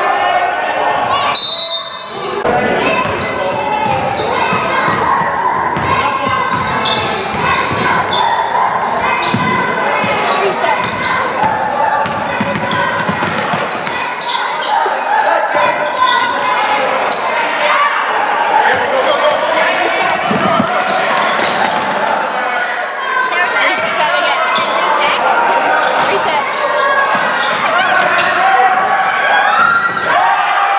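Live basketball game sound in a large gym: a basketball bouncing on the hardwood floor amid spectators' and players' voices, all echoing in the hall.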